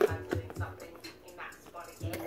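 A few light knocks of small plastic toys being moved about in a cardboard box in the first second, over faint background music.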